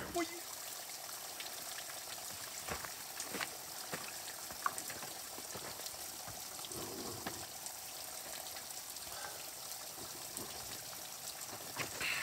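Thin streams of spring water trickling and splashing off a mossy rock ledge onto wet stones, a steady, faint splashing hiss with a few sharp clicks scattered through.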